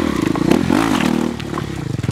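Kawasaki dirt bike engine revving in quick throttle blips, its pitch rising and falling several times and easing off in the second half.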